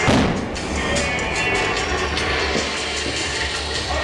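A pyrotechnic fireball explosion goes off right at the start and dies away over about half a second, over loud music that plays on steadily.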